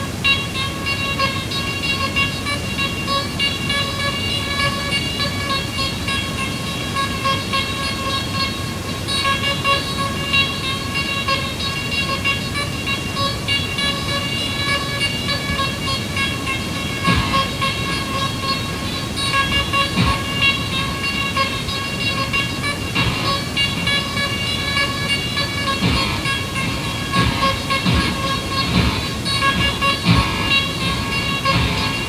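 Live electronic noise music: a steady pitched drone with a stack of overtones over a gritty noise layer, with a few low thumps in the second half.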